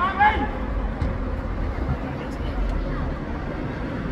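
A brief high-pitched shout from a person's voice right at the start, then a steady low rumble of street noise with faint voices.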